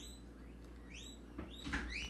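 Faint room tone of a desk recording: a low steady hum, with a few soft clicks and faint short sweeps about halfway through.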